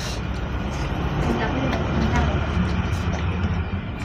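Low rumble of a passing motor vehicle, swelling to its loudest mid-way and then easing off, with faint voices underneath.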